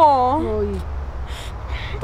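A woman's voice: the end of a drawn-out vocal phrase that falls in pitch and stops a little under a second in, then a couple of soft breathy sounds over a low steady hum.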